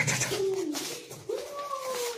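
Pug dog whining: two drawn-out, gliding whines, the second longer and arching.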